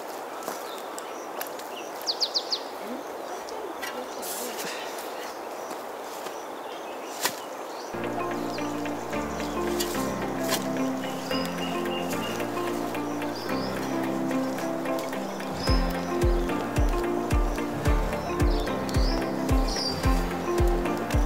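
Outdoor background with a few short bird chirps for about the first eight seconds; then background music comes in, and a steady low beat of about two a second joins it near the end.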